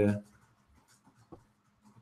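A man's voice finishing a word, then a near-silent pause in a small room, broken by one faint, brief sound just past a second in.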